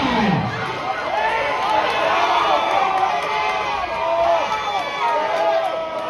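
Crowd of spectators cheering and shouting, many voices calling out over one another.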